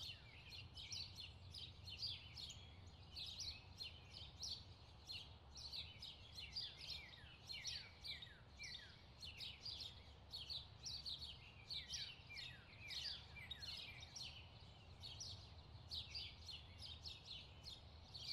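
Faint birdsong: many short, quick downward-sweeping chirps from small birds, over a low steady background hum.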